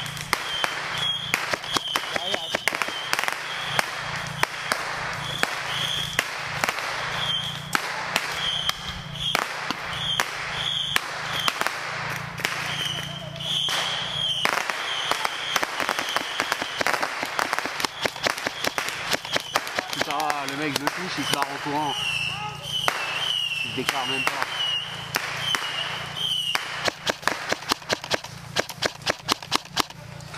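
Airsoft gunfire: many sharp cracks and snaps throughout, coming in quicker runs near the end, with players' voices in the background.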